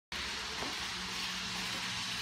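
N gauge model trains running on the layout's track: a steady hiss with a faint low hum.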